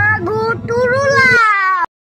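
A child's high-pitched, drawn-out wailing voice in two long notes, the second sagging in pitch at its end before cutting off abruptly near the end.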